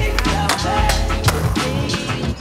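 Skateboard wheels rolling on pavement, mixed with a hip-hop track.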